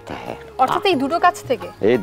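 Indistinct talking over background music, with a steady held tone under short wavering vocal sounds in the middle.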